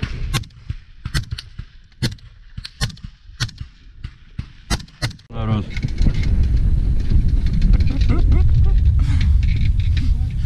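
A string of about a dozen sharp gunshots at irregular intervals over the first five seconds. Then a loud, steady low rumble of wind buffeting the microphone takes over.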